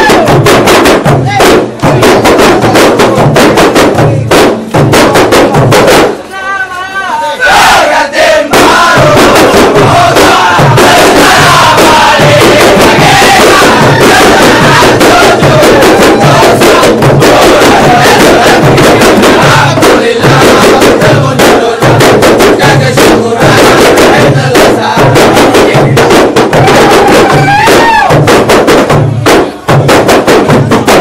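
A troupe of kompang, Malay hand-held frame drums, played in a fast, dense interlocking rhythm, very loud, with a crowd of voices shouting and chanting over it. About six seconds in, the drumming breaks off for a moment while a single voice sings out, and then the drums come back in.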